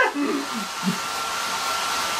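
Handheld hair dryer running on setting one, blowing into an inflated fabric bonnet attachment: a steady rush of air with a thin high whine.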